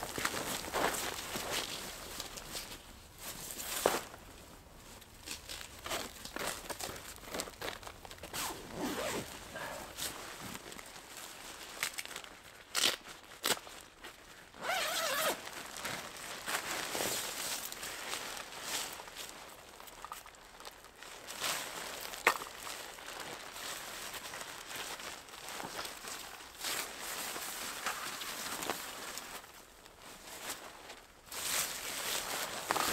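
Fabric of a Naturehike Spire one-person tent's rainfly rustling and crinkling as it is spread out and raised on a wooden pole, with footsteps and kneeling in snow. A few short, sharp knocks come at irregular moments.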